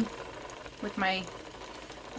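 An Ashford Joy spinning wheel fitted with a Woolee Winder flyer, running steadily under a woman's brief words. The Woolee Winder wobbles a little, which the spinner gives as the cause of a funny clicking sound.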